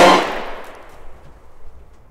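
A loud bang right at the start that cuts off the music, its tail dying away over about a second into faint room tone.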